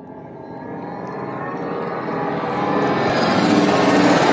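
A swelling riser sound effect that builds steadily louder throughout, several held tones under a growing rush, with a bright hiss joining in over the last second.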